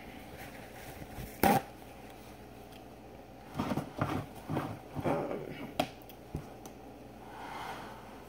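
Handling sounds on a kitchen counter: one sharp knock about a second and a half in, then a run of softer knocks and scuffs through the middle, as a beer can and paper towel are picked up and moved.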